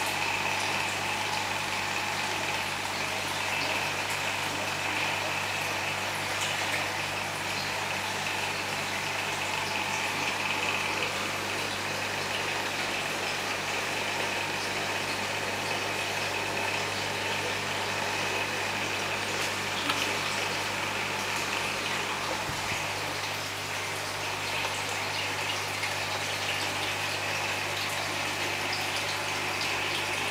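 Aquarium filter pump running steadily: water splashing and trickling over a low, even electric hum.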